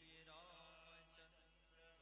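Faint devotional music: harmonium notes held steady, with a man's sung phrase that wavers in pitch near the start.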